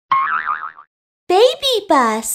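A short, high cartoon voice with a wavering pitch for under a second, then after a brief gap cartoon voice exclamations with swooping pitch: "ya... oh, oh".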